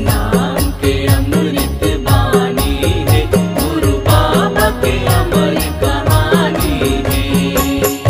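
A Panthi song, the Chhattisgarhi devotional folk music of the Satnami tradition. A woman sings a chant-like melody over percussion that keeps a steady, even beat.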